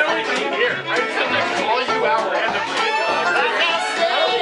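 Acoustic string band of fiddle, acoustic guitar and upright bass playing together, with the bass notes plucked in a steady pulse. People's voices and chatter run over the music.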